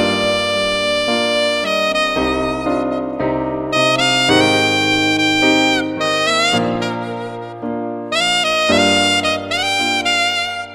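Instrumental worship music: a saxophone plays a slow melody of long held notes over a piano accompaniment.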